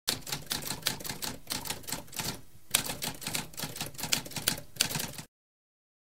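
Typewriter keys being typed in a rapid run of sharp clacks, several a second, with a short break just before halfway. The typing stops abruptly about five seconds in.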